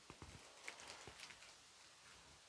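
Faint rustling and a few light taps from a paper sachet of vanilla sugar being shaken out over a glass bowl and put aside, in the first second and a half.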